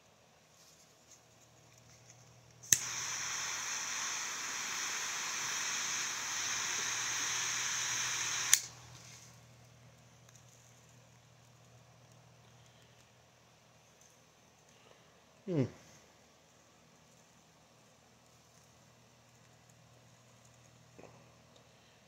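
Butane torch lighter lighting a cigar: a click, about six seconds of steady jet hiss, then a click as the flame is shut off.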